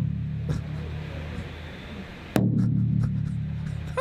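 A low, buzzing note from an amplified electric instrument fades away over about two seconds. It is struck again sharply about two and a half seconds in and held.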